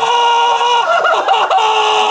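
A man's high-pitched laughter: a long held squeal that breaks into short, choppy bursts about a second in, with a clucking quality.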